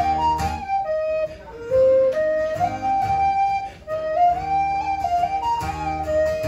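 Tin whistle playing a slow waltz melody in long held notes, accompanied by a strummed acoustic guitar. The whistle breaks off briefly between phrases, once about a second and a half in and again near four seconds.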